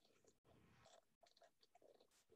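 Near silence, with only very faint scattered crackles.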